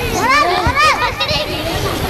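Young children's high-pitched voices speaking and calling out, in two sweeping phrases about half a second and a second in.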